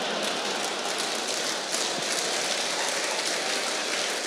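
Audience applauding, a steady dense clapping that holds at one level.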